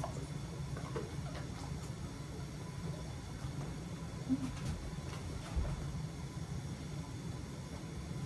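Quiet room tone: a low steady hum with a few faint short clicks and taps around the middle.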